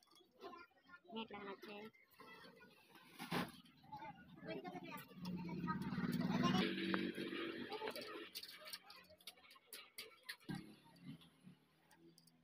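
Mostly a man's voice talking, loudest around the middle, with scattered small clicks and knocks of the scooter's aluminium cylinder head and cam parts being handled.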